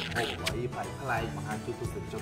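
A man talking over background music with steady held low notes, with one sharp click about half a second in.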